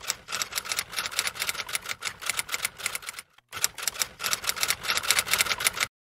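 Typewriter keystroke sound effect: rapid sharp clacks, about eight a second, with a short break a little over three seconds in, then cut off at the end.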